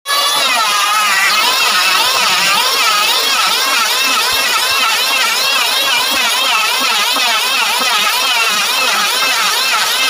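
Electric hand planer cutting along a wooden beam: a loud, continuous motor whine whose pitch wavers up and down as it bites into the wood.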